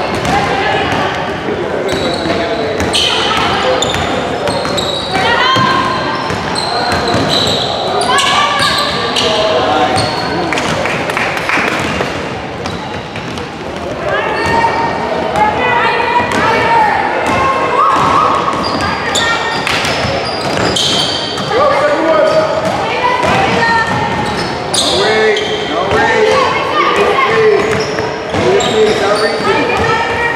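Basketball game sounds in an echoing gymnasium: a basketball bouncing on the hardwood court amid overlapping shouts and chatter from players, coaches and spectators.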